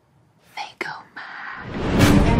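A sudden drop to near silence, then about half a second in a woman's short, breathy whispered utterance with a gliding pitch. After it a hissing swell rises steadily in loudness toward the end, building into the music.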